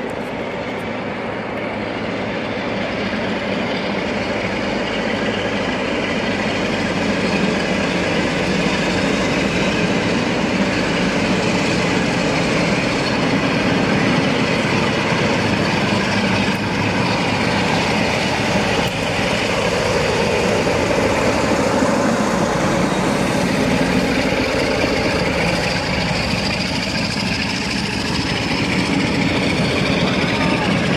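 Two Class 47 diesel locomotives, each with a Sulzer 12-cylinder twin-bank engine, working under power as they haul a train out along the platform. The sound grows steadily louder as the locomotives approach and pass close by.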